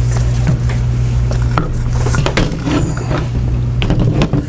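Handling noise from a Browning Automatic Rifle being turned over and set down on a table: a few scattered knocks and clicks of metal and wood, over a steady low hum.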